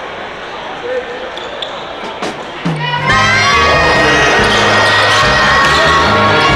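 Gym crowd chatter with a few basketball bounces and sneaker squeaks on a hardwood court; about three seconds in, loud music with a sung voice cuts in over it.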